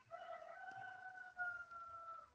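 A faint, drawn-out pitched call lasting about two seconds, held on a nearly level pitch that sags slightly toward the end, with its loudest moment a little past the middle.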